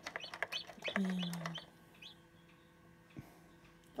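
Newly hatched chick peeping in quick short cheeps for the first second and a half, then a steady low hum from the incubator with a single click about three seconds in.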